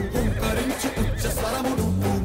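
Action film score playing, with a horse whinnying briefly near the start.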